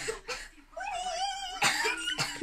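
A child's wordless vocal sounds: a couple of short cough-like bursts, then a drawn-out, wavering voiced sound, then another short burst near the end.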